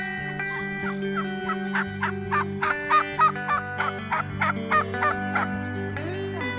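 Domestic white turkey calling in a quick series of about a dozen short calls, loudest near the middle, over steady background music.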